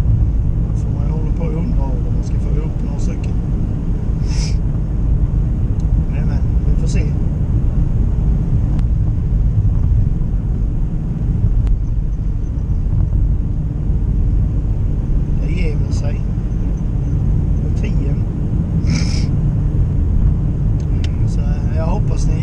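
Car interior while driving: steady low road and engine rumble heard from inside the cabin, with a few brief, sharper higher-pitched noises scattered through it.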